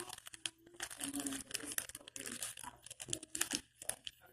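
Close crinkling and crackling from something being handled right by the microphone, in quick irregular bursts.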